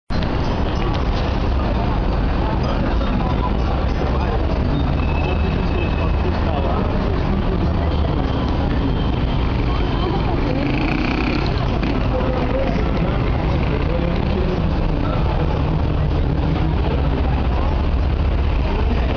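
Busy city street ambience: road traffic running steadily under a heavy low rumble, with people's voices in the background.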